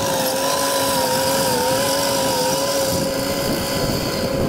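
A Caterpillar 953C track loader running and driving away, with a steady whine that wavers slightly in pitch over the engine's low rumble.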